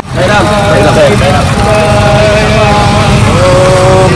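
Conch shell (shankh) blown in long held notes, the pitch wavering at first and then holding steady.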